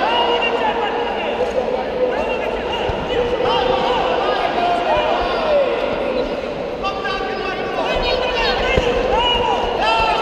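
Several voices shouting and calling across a large hall, overlapping and unintelligible, as spectators and corner coaches urge on the fighters. A couple of dull thuds from the bout come through, about three seconds in and again near the end.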